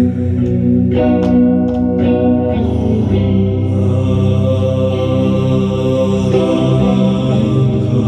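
Electric guitar played through an amplifier and effects, ringing sustained chords that change a few times.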